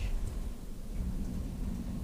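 Low, steady rumble of room noise with a faint hum, picked up by the witness-stand microphone, without distinct knocks or clicks.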